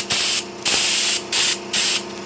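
An air spray gun sprays thick flash-laser speckle paint in four short hissing bursts, the trigger pulled and released between them. A steady low hum runs underneath.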